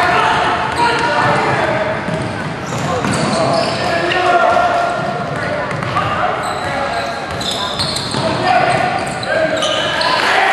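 Basketball game sounds in a large, echoing gym: indistinct shouts and chatter from players and spectators, a basketball bouncing on the hardwood, and sneakers squeaking on the court a few times in the second half.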